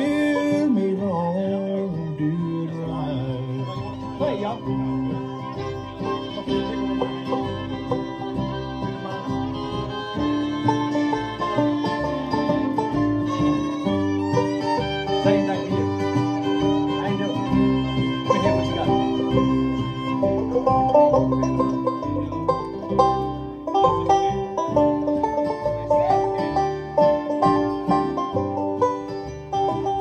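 A bluegrass band plays an instrumental break within a song, with no singing. Acoustic guitar and electric bass play under a string lead that slides between notes at the start.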